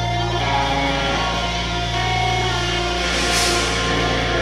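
Live metalcore band playing a sustained intro between songs: ringing, held electric guitar notes over a steady low drone, with a short hissy swell about three seconds in.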